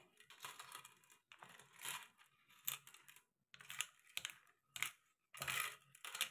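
Faint, irregular small clicks and scrapes of loose coins and a toothbrush knocking and sliding against a sink basin as the coins are pushed along through the wet cleaning mix.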